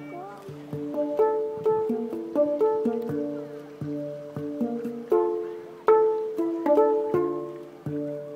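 Handpan (hang drum) played with the fingers: a stream of struck steel notes, several a second, each ringing on and overlapping the next, in a melodic pattern. The strongest strikes land about five and six seconds in.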